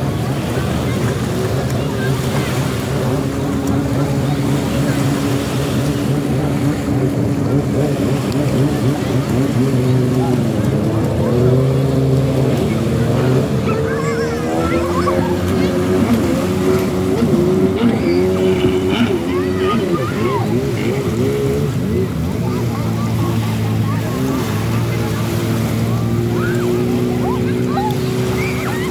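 Jet ski engines running just offshore, a steady hum whose pitch rises and falls as the riders rev and ease off, most clearly about ten seconds in.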